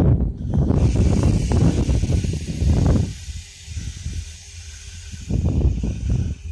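Freight train of tank cars rolling slowly past at close range: a heavy, uneven low rumble that falls away about three seconds in and comes back near the end, over a steady hiss.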